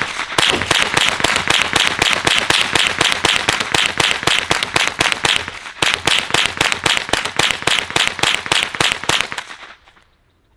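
Rifle fitted with a 55-round drum magazine fired rapidly, about five shots a second, with one brief break about six seconds in, then more shots until the magazine runs empty near the end.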